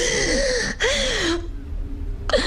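A woman gasping, two breathy gasps in quick succession, the second one ending about a second and a half in.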